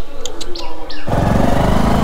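A few short bird chirps, then, about halfway through, a motorcycle engine cuts in abruptly and runs loud and steady as the ride begins.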